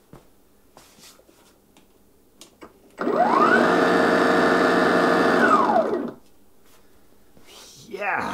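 Ryobi 18V One+ dethatcher/scarifier's brushless motor, fed by a 40V battery through a homemade adapter, spinning up with a rising whine about three seconds in, running steadily for a couple of seconds, then winding down with a falling whine. A few faint clicks come before it starts.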